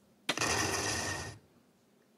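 A soft-tip dart strikes an electronic dartboard about a third of a second in, and the machine plays its hit sound effect for about a second: the triple-20 award for a 60-point dart.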